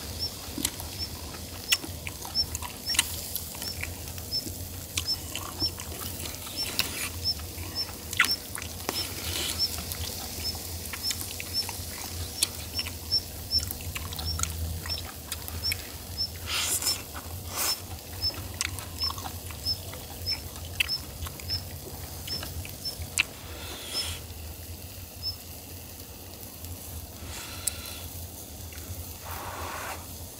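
Close-miked eating sounds of grilled clams: wet chewing and slurping, with sharp clicks of wooden chopsticks. There is a longer slurp of juicy clam meat about sixteen seconds in.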